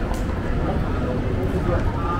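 Busy city street ambience: a steady traffic rumble with passers-by talking in the background.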